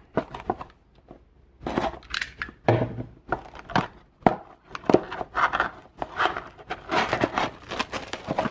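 Plastic shrink wrap on a cardboard trading-card blaster box being slit with a utility knife and peeled off: a run of irregular crinkles and rustles.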